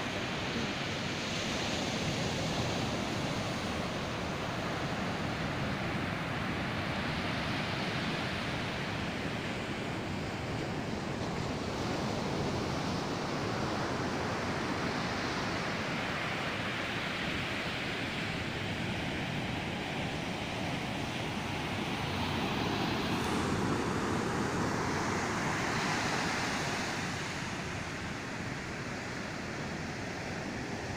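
Ocean surf breaking on a sandy beach in a rough sea, a continuous wash that swells and eases. It is louder for a few seconds past the middle, then a little softer near the end.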